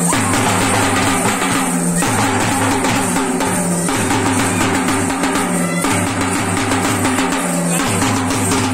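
Loud, dense drumming on hand-held drums beaten with sticks, a shallow metal-shelled drum and a double-headed barrel drum, in a driving folk dance rhythm whose pattern repeats about every two seconds.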